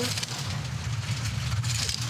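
Two-man bobsleigh's steel runners on the ice at about 80–90 km/h: a steady low rumble with a hiss above it.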